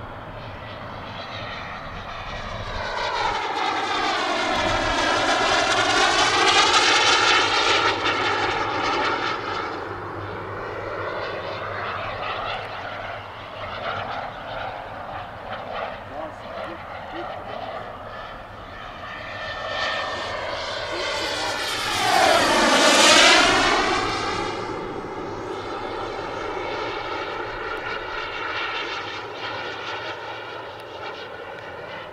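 Turbine engine of a radio-controlled Mirage 2000C scale model jet whining as the jet makes two fly-by passes, the sound swelling and sweeping in pitch with each pass: a broad one peaking about six or seven seconds in and a sharper, louder one about twenty-three seconds in, with the whine fading between them.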